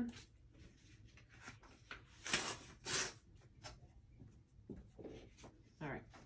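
Sheets of paper being handled on a table: two short rustles a little past two seconds in, with a few faint taps around them.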